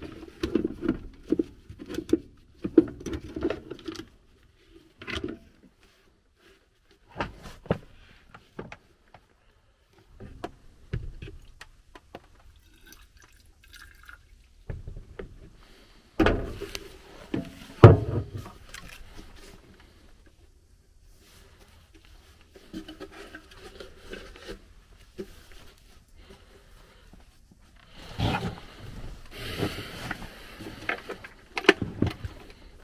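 Scattered knocks, scrapes and rustles of gloved hands handling a furnace inducer blower assembly and its cabinet parts. There are quiet stretches in between, and the loudest knocks come about two-thirds of the way through and near the end.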